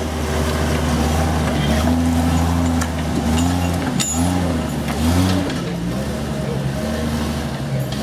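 Jeep Cherokee XJ engine pulling under load up a rocky climb, its revs swelling and dropping several times in the middle. A sharp knock about four seconds in.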